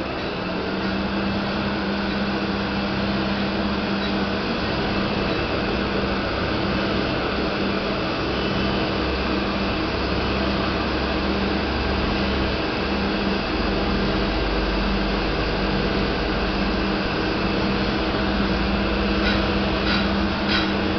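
Automatic slitting-saw sharpening machine running, its grinding wheel working the blade's teeth inside the closed cabinet under coolant spray: a steady whirring hiss over a low tone that pulses on and off at an even rhythm. A few sharp clicks come near the end.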